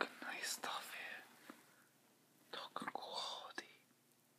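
A person whispering in two short bursts, with a pause between them.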